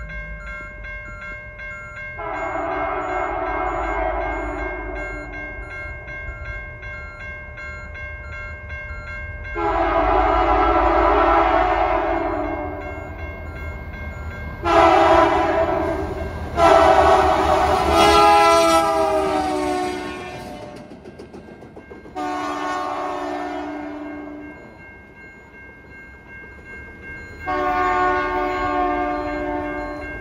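Canadian National diesel locomotive's air horn sounding six blasts, long and short, for a grade crossing; the fourth blast drops in pitch as the locomotive passes. The low rumble of the locomotive engines runs underneath, and a pickup truck's reversing alarm beeps steadily in the gaps between blasts.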